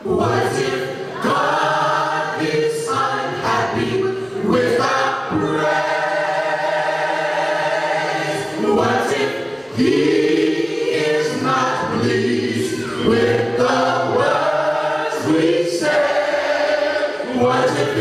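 Large mixed church choir singing a gospel song a cappella, with no instruments, coming in all together at once and moving through long held chords.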